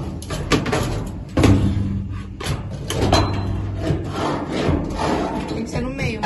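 A long pole knocking and scraping against a framed picture and loose trash inside a dumpster, as someone tries to hook the frame, with irregular clunks and rustling.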